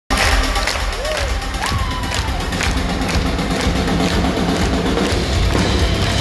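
A heavy rock band playing live and loud through a PA, with a steady drum beat and heavy bass, and a crowd cheering and shouting. Two short voice calls, rising then falling, come about one and two seconds in.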